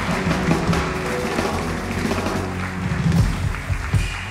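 Live house band playing a short instrumental passage on keyboards, guitar, bass guitar and drums, with sustained low bass notes under the chords.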